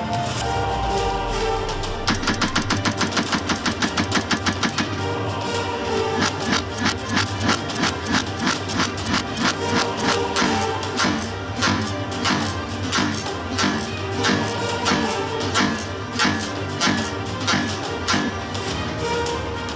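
A Radical Firearms 7.62x39 AR-pattern short-barrelled rifle being fired over background music. After a couple of seconds of music alone, a fast string of about five shots a second runs for some three seconds, then steadier shots follow about two a second. The rifle is cycling with a swapped-in carbine-length, standard-strength buffer spring.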